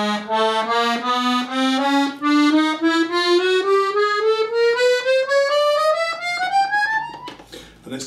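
B-system chromatic button accordion playing an ascending chromatic scale on its right-hand buttons, zigzagging across rows four, three and two. It climbs in even semitone steps, about four notes a second, over a little more than two octaves, and stops about seven seconds in.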